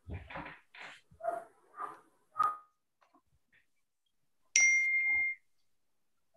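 A single electronic notification ding about four and a half seconds in: a steady high tone lasting under a second, coming through a video-call audio feed. Before it, quieter indistinct talk.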